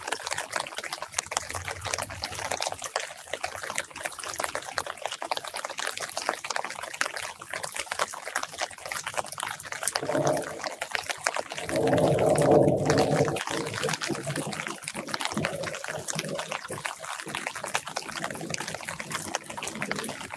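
Light rain pattering on the leaves of a citrus tree, with drops dripping from the branches in a dense, steady patter. Just past the middle a low rumble swells for about three seconds and then fades.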